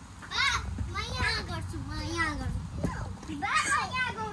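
Young children's voices: several short, high-pitched calls and shouts of children at play, with no clear words.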